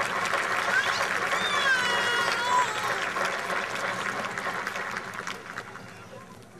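Outdoor crowd applauding, with a cheer rising over the clapping about two seconds in; the clapping thins and fades out near the end.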